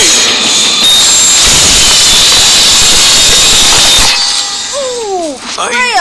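Cartoon sound effect of a robot's hand-mounted circular saw blade spinning, a loud steady whir that cuts off suddenly about four seconds in. A couple of short falling-pitch sounds follow.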